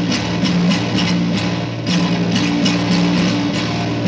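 Electric bass guitar playing a repeating riff of low sustained notes.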